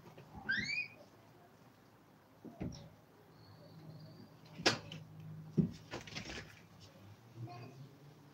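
Quiet workshop sounds: a short rising chirp about half a second in, then a few sharp clicks and a dull knock a little past the middle, over a faint steady low hum.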